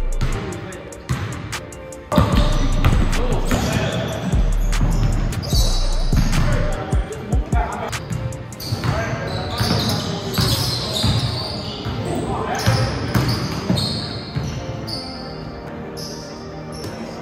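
A basketball bouncing on a hardwood gym floor during play, with players' voices.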